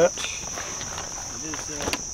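A steady, high-pitched drone of insects, without a break. A man's voice trails off at the very start and a few quiet words come near the end.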